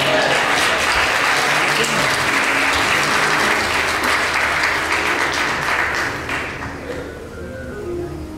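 Congregation applauding, dying away about six or seven seconds in, with soft music held underneath.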